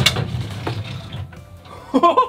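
A wooden cabinet door being pulled open, with a sharp knock as it starts to move and a couple of lighter knocks after.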